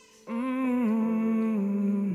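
A man's voice humming a slow wordless melody, coming in strongly after a brief quiet moment and stepping down through long held notes, over soft sustained instrumental tones.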